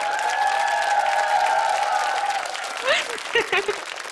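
Studio audience applauding, with a long drawn-out vocal 'ooh' held over the clapping for the first couple of seconds, then brief calls.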